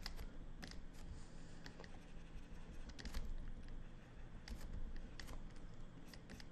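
Faint, irregular clicks and light scratches, a few a second, from a stylus nib tapping and stroking across a pen display's screen as lines are drawn.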